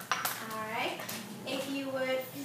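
A brief clatter of hard objects just after the start, then high-pitched voices calling out in a classroom.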